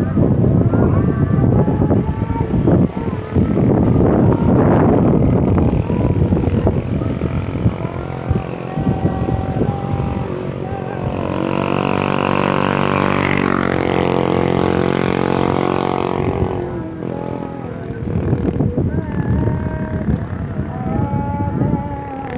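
A small motor scooter approaches and passes close by about halfway through, its engine note rising and then falling over some five seconds. Voices and irregular outdoor noise fill the rest.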